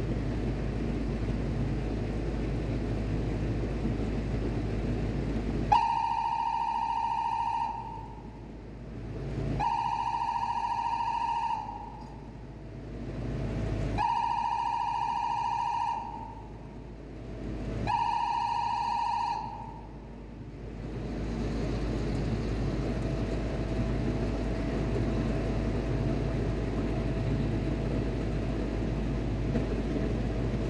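Steady low machinery rumble of a ship's machinery space. About six seconds in, a pitched electronic beep sounds four times, each about two seconds long and roughly four seconds apart.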